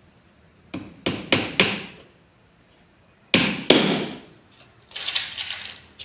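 Hammer driving nails into a wooden box of timber boards: four quick strikes about a second in, two louder blows near the middle, then a run of lighter, rattling taps near the end.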